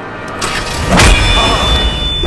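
Jeep engine starting and revving, rising to a loud rev about a second in.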